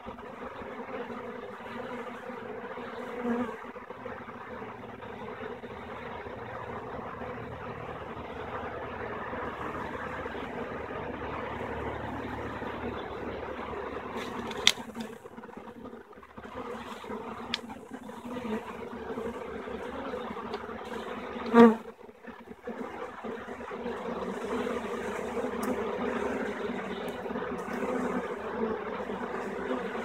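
Honey bee swarm buzzing steadily as a dense mass of bees crowds into a swarm trap's entrance hole.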